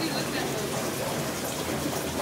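Steady splashing and trickling of circulating water in aquarium tanks, from their filters and overflows.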